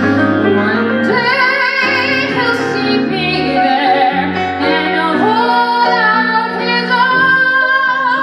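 Female vocalist singing a show tune live over instrumental accompaniment, holding long notes with a wide vibrato in the second half.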